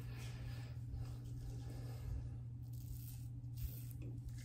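Faint scraping of a Tatara Muramasa double-edge safety razor on lathered stubble in a few short touch-up strokes, over a steady low hum.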